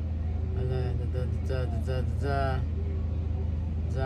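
A woman's voice murmuring indistinctly under her breath for about two seconds, over a steady low hum that runs throughout.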